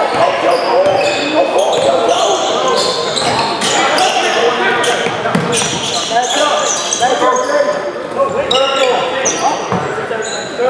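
Basketball being dribbled on a hardwood gym floor, with repeated sharp bounces, amid short pitched squeaks of sneakers and players' and spectators' voices, all echoing in a large gymnasium.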